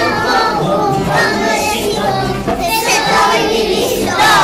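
A group of young children singing a song together.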